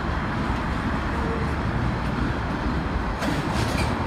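R160 subway train rolling slowly over track switches on an elevated line, a steady low rumble of wheels on rail. Sharper wheel clicks and clatter come in about three seconds in.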